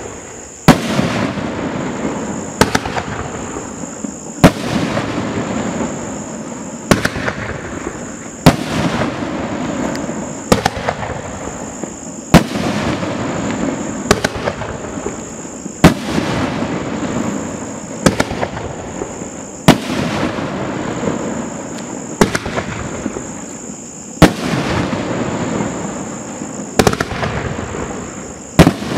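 T-Sky Rainbow Heaven 3-inch 9-shot firework rack firing: a string of sharp reports roughly every two seconds, each trailed by a spell of rumbling noise.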